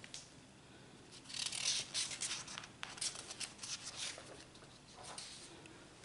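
Sheets of drawing paper rustling and sliding as they are handled: a dense run of crisp rustles and small clicks lasting about three seconds, then a few softer ones near the end.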